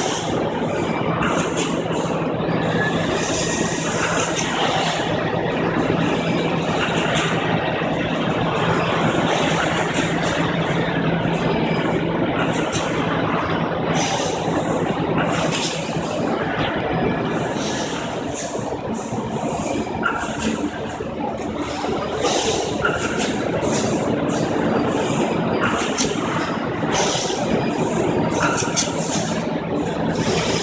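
Plastics-processing machinery running: a steady low hum and mechanical din, with short bursts of hiss repeating irregularly about every second.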